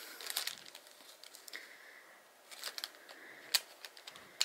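Light crinkling of a clear plastic bag and small clicks as a camera lens and its caps are handled, with one sharper click a little after three seconds in.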